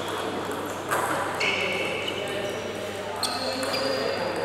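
Table tennis ball clicks in a reverberant hall, one about a second in and another just past three seconds, with short high steady tones, over faint background voices.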